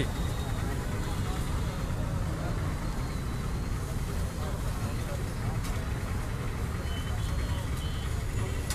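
Steady low rumble of road traffic, with indistinct voices in the background.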